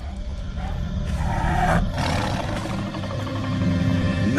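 Tiger growling, a low rough rumble that swells about a second in and breaks off shortly before two seconds.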